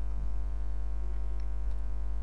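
Steady electrical mains hum with a buzz of many even overtones, constant in pitch and level.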